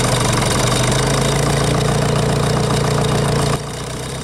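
Nuffield tractor engine running steadily under way, heard close to its upright exhaust stack. Its level drops suddenly about three and a half seconds in.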